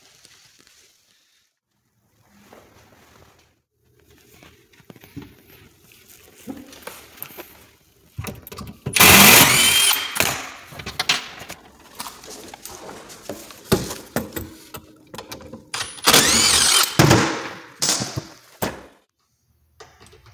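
Cordless screw gun backing out cabinet screws: two loud runs of the motor, one about nine seconds in and one about sixteen seconds in, the second with a whine that rises and falls, with lighter clicks and knocks of handling between them.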